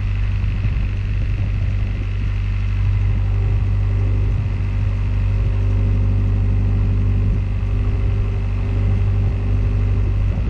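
Narrowboat's diesel engine running steadily under way, a constant low hum with a steady pitch.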